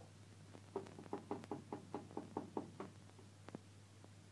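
A utensil beating eggs in a metal pan, knocking against the pan in a quick, even run of about a dozen strokes, roughly six a second, with one last knock near the end.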